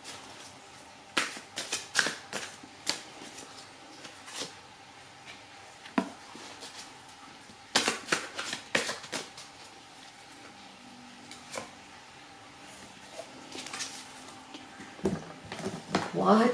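Tarot cards being shuffled and laid down on a table: scattered sharp clicks and taps, some in quick clusters, from the cards' edges snapping and slapping together.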